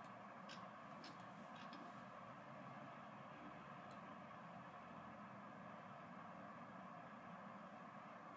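Near silence: faint steady room hiss, with a few faint clicks of a computer mouse in the first two seconds and one more about four seconds in, as a spreadsheet is scrolled.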